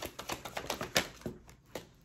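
A tarot deck being shuffled by hand: a quick run of crisp card clicks and flicks that thins out over the last half-second.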